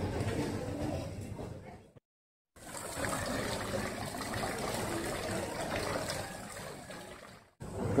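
Steady background noise of a large indoor terminal hall, with faint distant voices. The sound cuts out completely for about half a second around two seconds in, and again briefly near the end.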